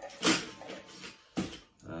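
Coloured pencils tipped out of a tin, clattering onto a table, with a sharp click about one and a half seconds in.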